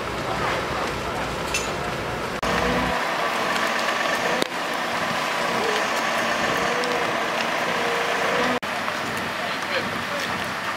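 Fire engines running at a large building fire: a steady drone of engines and pumps with faint crackling and indistinct voices. The sound changes abruptly twice, at cuts.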